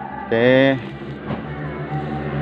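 Speech: a man says "oke" once, over a steady low hum in the background.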